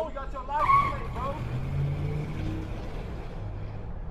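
A car's tyres squeal, loudest about a second in, then its engine runs steadily as it pulls away.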